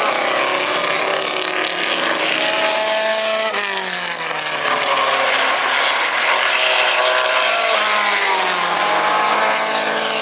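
Historic 1950s sports racing cars' engines passing at speed on a circuit. Engine notes climb as the cars accelerate, then drop sharply as one goes by about three and a half seconds in. A second rise and drop comes near the end.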